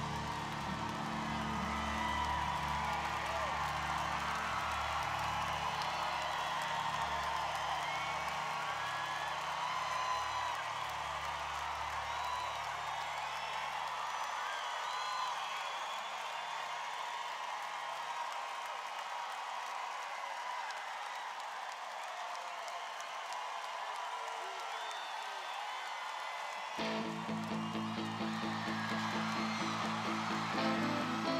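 Concert crowd cheering and whooping while the band's last sustained low chord fades out over about fifteen seconds. Near the end the band suddenly starts the next song with a steady pulsing beat and guitar.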